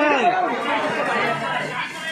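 A crowd of adults and children chattering, many voices talking over each other at once.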